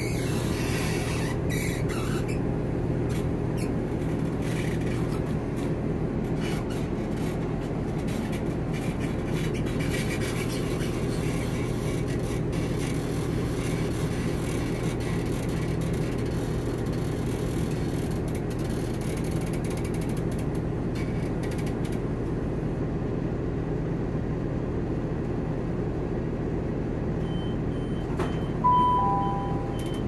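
Class 170 Turbostar diesel multiple unit running, a steady low rumble and hum from the engine and wheels heard inside the gangway between carriages. Near the end the train's public-address chime sounds two notes, high then lower.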